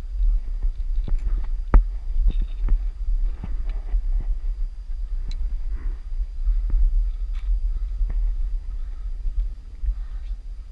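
Irregular clicks and knocks of climbing on the Half Dome cables: gloved hands gripping the steel cable handrails and boots stepping on the granite and boards, with one sharp knock, the loudest, about two seconds in. A steady low rumble lies underneath.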